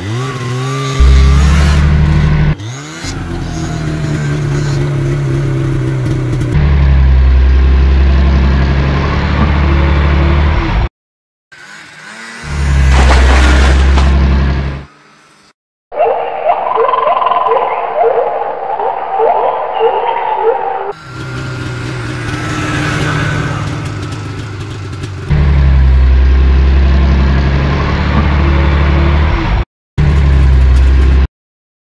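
Dubbed vehicle-engine sound effects: an engine revs up at the start, then runs in several separate clips cut together with sudden breaks and short gaps. For a few seconds past the middle, a different higher-pitched sound replaces the engine.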